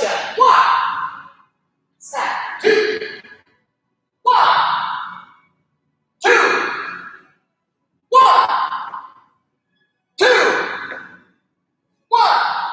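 Short called-out counts or commands in a person's voice, one about every two seconds, each trailing off in the echo of a large hall; the first two calls come in quick pairs. They pace movements done in unison during a taekwondo drill.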